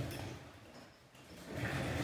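Faint room hiss in a pause between a man's words, with no machine running and no tool sounds.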